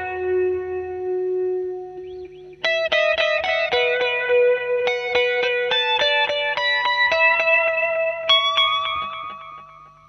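Fender Jazzmaster electric guitar playing a single-note melodic lead line through a delay, each picked note echoing. A held note rings and fades for the first couple of seconds. From about three seconds in comes a run of quickly picked notes, and the line ends on a sustained note that dies away.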